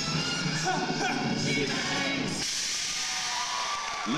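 Loud pop dance track with singing over a theatre's sound system, cutting off sharply about halfway through; an audience then applauds and cheers as the number ends.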